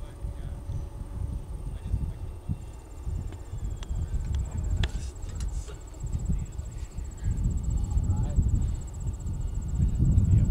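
Wind rumbling unevenly on the microphone, with a steady high-pitched insect trill that becomes clear about three seconds in.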